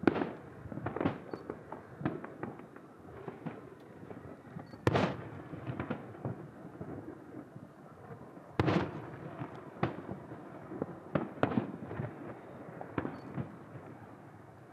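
Aerial fireworks bursting at a distance: three big booms, one right at the start, one about five seconds in and one near nine seconds, each trailing off in a rolling echo, with many smaller pops and crackles in between.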